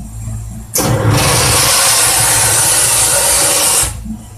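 Market Forge gas steamer blasting steam into its cooking compartment: a loud, steady hiss that starts suddenly about a second in and cuts off abruptly just before the end. A low hum is under it at the start.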